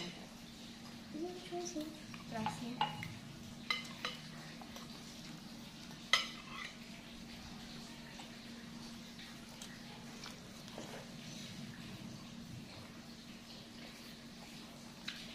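Metal spoons and forks clinking and scraping against a glass serving bowl as noodles are lifted out, with a few sharp clinks in the first half and only occasional light ones later.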